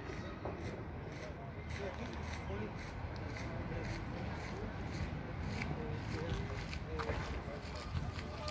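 Outdoor ambience: a steady low rumble with faint, indistinct voices and scattered small clicks.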